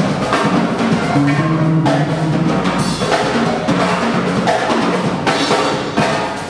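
Live band playing: a Pearl drum kit beats out kick and snare over bass guitar and electric keyboard.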